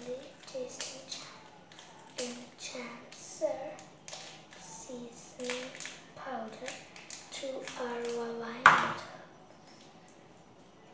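A child's voice in short syllables, holding one steady note near the end, over the crinkle and snip of scissors cutting open a plastic noodle seasoning sachet. A sharp snap near the end is the loudest sound.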